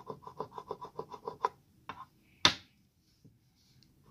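A coin scratching the coating off a scratch-off lottery ticket in quick, even strokes, about eight a second, stopping after about a second and a half. A single sharp tap about two and a half seconds in is the loudest sound.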